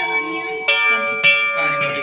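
Hanging temple bells being struck by hand and ringing on. A fresh strike comes about two-thirds of a second in and another a little past a second, each sounding over the ring of the last.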